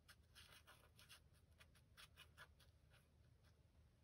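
Very faint brushing of a wet watercolour brush worked on its side across watercolour paper to soften freshly painted dots, a dozen or so light, quick strokes.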